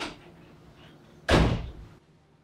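A door banging shut: one heavy slam about a second in, dying away within half a second.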